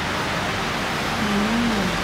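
Steady background noise, even and without clear events, with a faint distant voice partway through.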